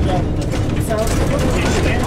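Cabin noise of a Jelcz 120M diesel city bus driving along a rough, patched road: a steady low rumble of engine and tyres with short knocks and rattles from the body.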